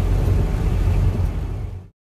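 Road noise inside a moving car's cabin: a steady low rumble of engine and tyres on a wet road, with a hiss above it, fading out to silence near the end.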